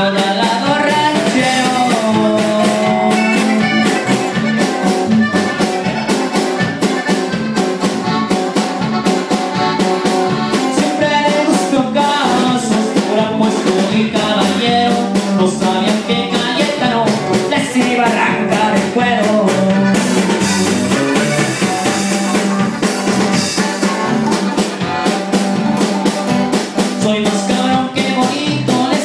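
Live norteño band playing: accordion melody over bajo sexto, electric bass and drum kit keeping a steady, fast beat.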